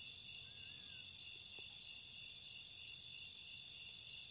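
Faint, steady high-pitched trilling of crickets.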